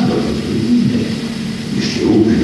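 Low, muffled rumble on an old amateur tape recording, with the sound's energy sitting in the low range and little above it.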